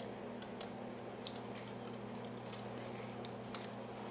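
Faint, scattered small clicks and scratches of a hook pick working the spool pins inside a Brinks brass padlock under tension, over a steady low hum.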